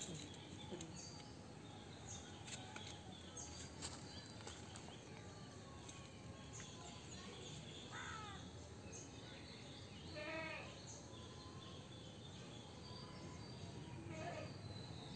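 Faint outdoor background noise with an animal bleating about eight seconds in and again, with a quaver, about ten seconds in. A few faint clicks and taps are scattered through it.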